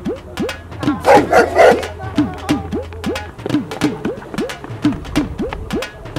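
Comedic background music loop: a steady beat with a swooping, gliding note repeating about twice a second. A loud short outburst of three quick pulses comes about a second in.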